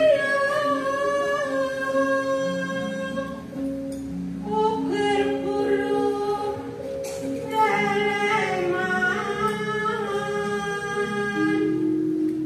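A woman singing macapat, traditional Javanese sung verse, into a microphone: long held notes that waver and slide between pitches, with a lower sustained note beneath them. There is a short break between phrases about four seconds in.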